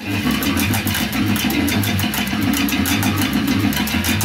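Four-string electric bass guitar played fingerstyle: a fast, continuous run of plucked notes, each with a sharp attack.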